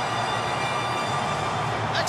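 Stadium crowd cheering in a loud, steady roar just after a late try.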